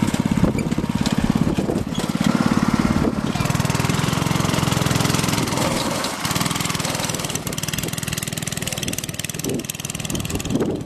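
Small go-kart engine running steadily, a rapid even putter that eases off a little in the second half as the kart drives away.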